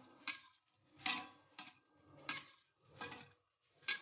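Metal spatula scraping and clinking against a wire spider strainer and wok while pushing fried peanuts into the strainer to drain them: about six short, faint strokes at uneven intervals.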